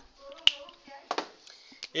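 Whiteboard marker writing on a board: a few sharp ticks and short scrapes as letters are drawn, the loudest tick about half a second in.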